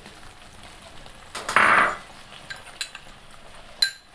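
Kitchen utensil handling over a pan of curry: a brief scraping rustle about one and a half seconds in, then a few sharp clinks of a utensil against a container or the pan.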